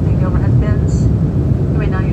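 Steady low rumble of an airliner's engines and rushing air heard inside the passenger cabin in flight.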